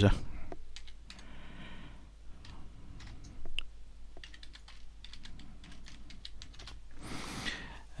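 Computer keyboard being typed on: an irregular run of separate key clicks, as a password is entered.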